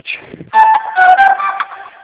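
A brief string of clear, whistle-like notes at several stepping pitches, starting about half a second in and lasting about a second and a half.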